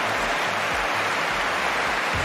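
Large audience applauding: dense, steady clapping.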